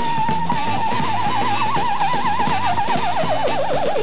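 Live New Orleans brass band music: a brass horn holds one long high note whose vibrato grows wider into a shake that falls away near the end, over a bass line and drums.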